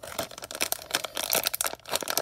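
A plastic LEGO minifigure blind bag being squeezed and crinkled in the hands: a continuous run of short, irregular plastic crinkles.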